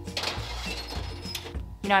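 A metal baking sheet scrapes and clatters onto an oven rack in a short burst at the start, over steady background music.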